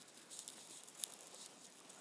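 Faint room tone with a couple of small, sharp clicks.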